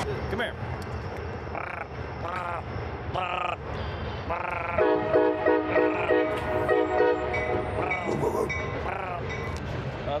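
Canada goose honking: a few separate honks in the first few seconds, then a quick run of honks lasting about two seconds in the middle.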